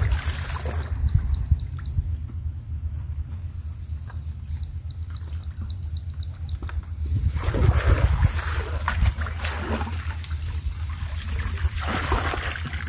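River water sloshing and splashing as a plastic bucket and net bag are dipped in at the bank and water is poured out, loudest in the second half and at the end, over a steady low rumble. A bird gives two quick runs of short high chirps, about a second in and again around five seconds.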